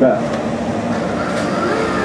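Tracked excavator in the 8.5-tonne class running steadily under working load as it lifts and tilts a screening bucket, its engine and hydraulics making an even noise, with a faint whine coming in about one and a half seconds in.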